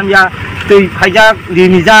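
A man speaking: continuous talk in short phrases.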